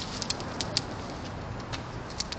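Blue-and-gold macaw's beak and claws clicking and tapping on a plastic patio chair as it climbs: a quick run of sharp clicks in the first second, then one more near the end.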